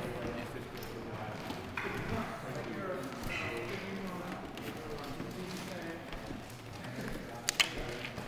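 Voices and a laugh at the start, then one sharp click near the end as a flicked Subbuteo figure strikes the small plastic ball.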